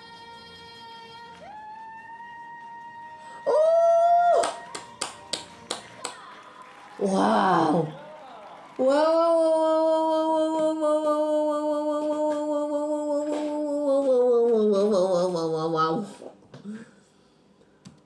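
Voices singing: a short loud high held note, then a quick run of sharp clicks and a shout, then a man singing one long held note that slides down near the end.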